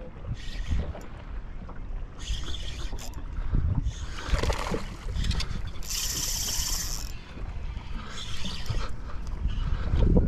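Spinning fishing reel sounding in short high-pitched bursts as a hooked fish is fought to the boat; the longest and loudest burst lasts about a second, just past the middle. Wind rumbles on the microphone throughout.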